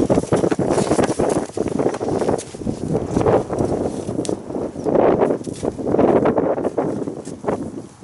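A horse's hooves thudding and scuffing in arena sand as it walks around and lines up beside a mounting block.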